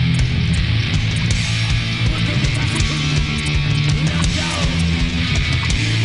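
Rock band playing live: electric guitar and bass over drums, with steady cymbal hits.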